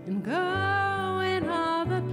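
A woman singing with piano and electric guitar accompaniment. She slides up into a long held note about a third of a second in, then moves on to the next notes near the end.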